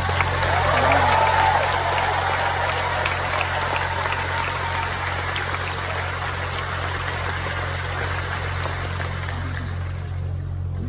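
Crowd applauding, with a few cheers in the first second or two, the clapping slowly dying down. A steady low hum runs underneath.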